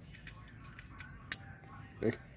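Faint small metallic clicks from small ignition hardware (a washer and wire terminal) being handled by hand, with one sharper click a little past halfway.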